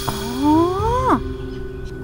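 A woman's drawn-out exclamation 'อ๋อ' ('oh, I see'), rising slowly in pitch for about a second and then dropping off sharply, over soft background music with held tones.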